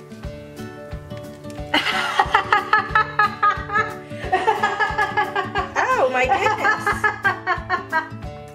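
Background music with a steady beat, and from about two seconds in, people laughing.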